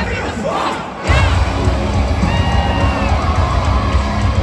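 Metalcore band playing live at full volume, heard from within the crowd. The music drops out for about a second, leaving the crowd's shouts and screams, then the band crashes back in with heavy drums and guitars, the crowd yelling over it.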